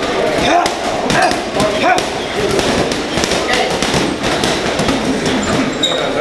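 Boxing-gym training: gloved punches hitting heavy bags, many sharp thuds at irregular intervals, with voices talking in the background.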